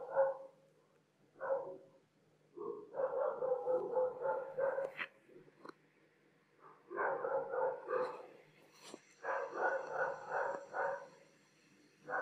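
An animal calling in repeated bursts of quick pitched calls, each burst a second or two long, with short gaps between. A faint steady high whine comes in about two-thirds of the way through.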